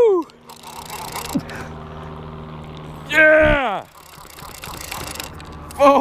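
A man lets out one loud, drawn-out whoop about three seconds in, excited at a fish he has just hooked. Around it is a steady low hum.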